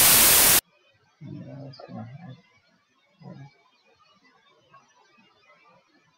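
A white-noise note from the LMMS TripleOscillator software synth, held for about half a second, then cutting off suddenly. Two brief low murmurs follow, then faint room tone.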